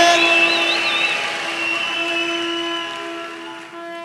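Music: a sustained held chord with a wavering high tone over it at first, fading out gradually over about four seconds.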